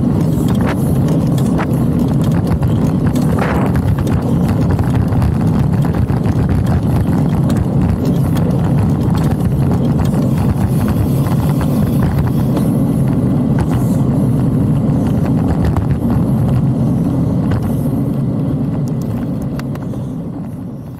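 Steady rumble of wind buffeting a handlebar-mounted action camera's microphone, with road noise from a road bike rolling on asphalt and scattered small clicks and rattles. It starts to fade out near the end.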